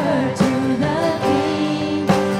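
A live worship band playing a contemporary worship song, with women's voices singing held notes over guitars, keyboard and drums.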